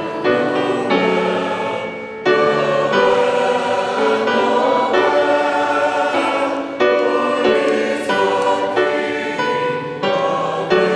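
Church choir singing in phrases, with fresh entries about two and seven seconds in.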